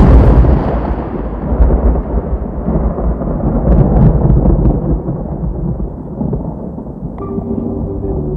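A deep drum roll on the film's soundtrack starts abruptly and loudly, rumbling heavily in the bass and slowly fading. About seven seconds in, sustained musical notes come in over it.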